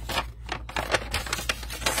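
A stiff parchment-paper scroll rustling and crackling as hands flatten and turn it over, a quick run of sharp irregular crinkles and scrapes.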